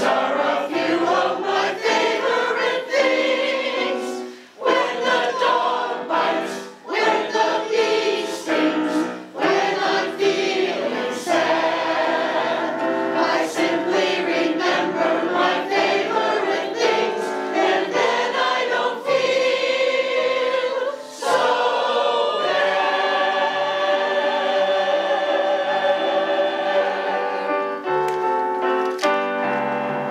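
Mixed choir of men's and women's voices singing in harmony, with electric keyboard accompaniment. The singing is continuous, with a few short breaks between phrases.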